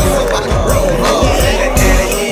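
Loud hip hop track playing over a sound system, with deep bass kicks that drop in pitch several times, and a voice rapping along on a microphone.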